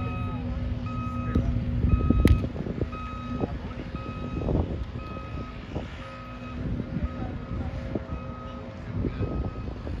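A vehicle's reversing alarm beeping steadily, about once a second, over a low rumble of engine and outdoor noise. A sharp smack of a volleyball being hit stands out about two seconds in.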